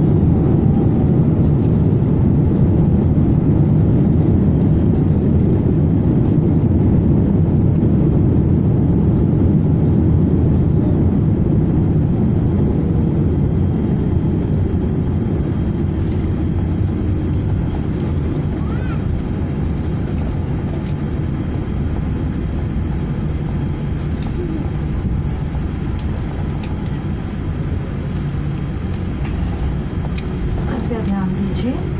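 Cabin noise inside a Boeing 787-8 airliner during the landing roll-out: a loud, steady low rumble of the jet engines, airflow and wheels on the runway, easing gradually as the aircraft slows.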